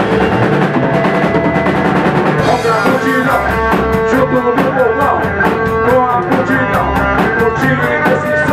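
Rock band playing loudly: electric guitar, bass guitar and drum kit together, with the drum hits growing denser and busier about three seconds in.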